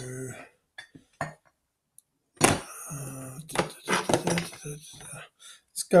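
A few light clicks and knocks of a glass hot-sauce bottle being picked up, then a man's voice mumbling indistinctly for a few seconds.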